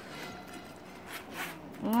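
Faint handling noise of a zip-around wallet, with a few light scrapes a little past the middle as a hand takes hold of its zipper pull.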